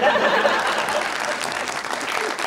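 Audience applause: steady, dense clapping.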